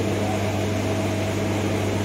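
Steady low electrical hum with an even hiss, the background noise of the microphone and hall loudspeaker system during a pause in speech.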